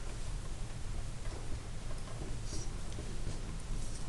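Quiet room tone with a steady low hum and hiss, with faint scratches and rustles of a ballpoint pen and hand moving over a paper worksheet.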